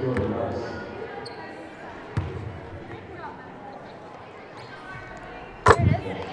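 Gymnasium sound of a basketball game: a basketball bouncing on the court, over a murmur of voices in the hall, with one clear bounce about two seconds in. A sharp knock comes just before the end.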